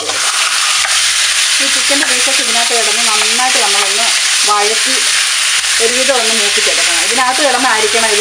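Raw chicken pieces dropped into hot oil in a nonstick frying pan, sizzling loudly from the moment they land and going on steadily as a wooden spatula stirs them among whole spices.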